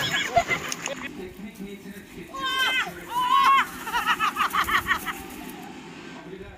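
High-pitched cries from a young voice, rising and falling, followed by a quick run of short bursts of laughter.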